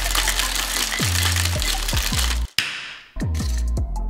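Ice cubes rattling hard in a metal cocktail shaker being shaken, breaking off abruptly about two and a half seconds in. Background music with a steady beat runs underneath.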